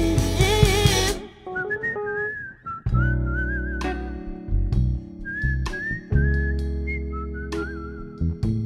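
A live band with singing breaks off about a second in; then a whistled melody with a light vibrato carries on over sparse electric bass notes, Fender Rhodes chords and occasional drum and cymbal hits.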